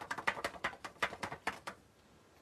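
A quick run of light taps, about seven a second, stopping near the end: cardstock tapped against a clear plastic tub to knock loose embossing powder off a stamped image.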